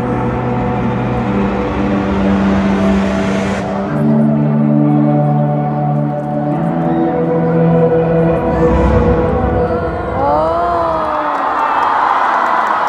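Concert arena sound system playing an interlude soundtrack of slow, sustained synth chords that change every second or two. Near the end, crowd screaming and cheering starts to rise over it.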